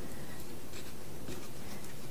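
Faint scratching of a coconut shucker's blade scoring the white meat of a mature coconut.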